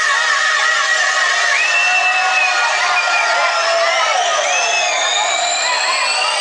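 Club crowd cheering and shouting over a dance-music breakdown with the bass and kick dropped out. From about halfway a synth sweep rises steadily in pitch, as in a build-up toward the drop.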